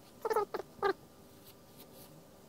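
Three short high-pitched calls in quick succession, each bending slightly downward, all within the first second.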